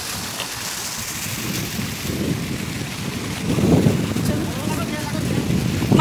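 Wind buffeting a phone microphone, a low rumble that swells a few seconds in, over the steady hiss of a splashing ground-level fountain jet. A voice starts faintly near the end.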